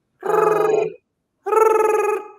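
A woman imitating a cell phone ringing with her voice: two pitched rings with a fast warble, each about a second long.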